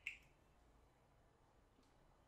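A whiteboard marker's plastic cap clicking once, sharply, right at the start.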